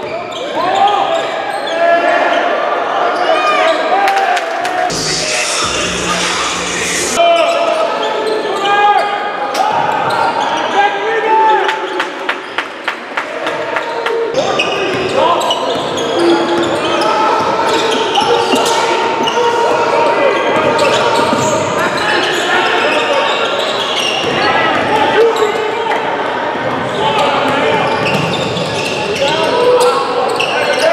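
Live basketball game in a gym: the ball bouncing on the hardwood and short shoe squeaks over a steady chatter of many voices, all echoing in the large hall.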